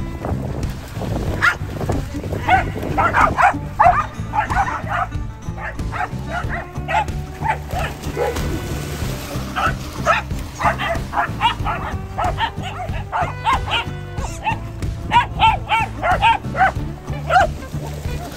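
Dogs barking in play in repeated short bursts, over background music with a steady low beat. The barking comes in two clusters, with a lull around the middle.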